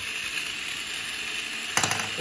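Small electric motor and plastic gearbox of a toy tumbling robot running with a steady whirr, with one sharp knock near the end as the robot flips over on the table.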